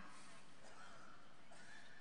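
Quiet room tone of a large hall during a pause between spoken phrases: a steady low hiss, with a faint thin high tone coming and going.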